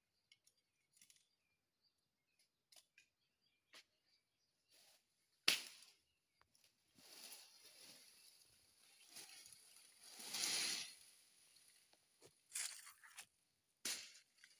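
Faint, scattered clicks and rustling of bean leaves and dry leaf litter as the plants are brushed at close range. The loudest parts are a sharp crackle about five seconds in and a longer rustle around ten seconds in.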